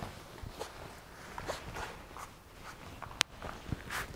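Soft rustles and light knocks of a person getting down onto a floor exercise mat on their hands and knees, with one sharp click about three seconds in.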